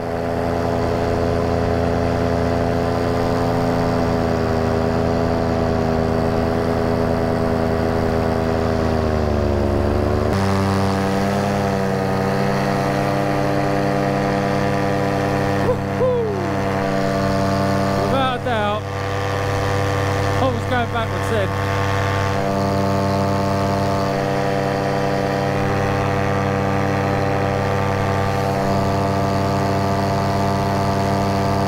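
Paramotor engine and propeller running steadily in flight. The pitch sags gradually for several seconds, then steps back up about ten seconds in, a change of throttle.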